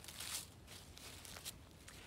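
Quiet pause: faint rustling and handling noise with a few soft clicks, over a low, steady outdoor background.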